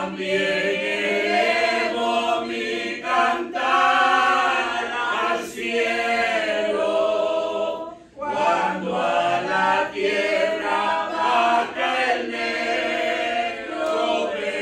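Unaccompanied hymn singing in Spanish, a woman's voice leading from the hymnal, in sung phrases with short breaks between, the longest break about eight seconds in.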